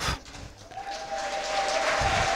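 Audience applause in a lecture hall, starting up about half a second in and swelling. A steady thin tone sounds alongside it from about a second in.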